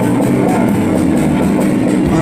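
Avant-rock trio playing live and loud: electric guitar over bass and a drum kit with a steady beat.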